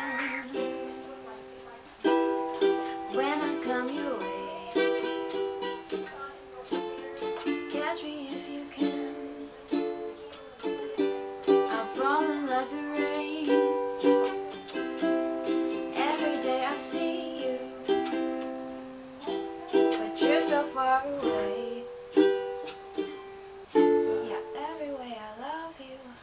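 Ukulele strummed in a steady rhythm, moving through a repeating chord progression with the chord changing every second or two.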